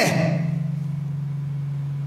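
A steady low hum with no speech over it; the echo of the last spoken word dies away in the first half-second.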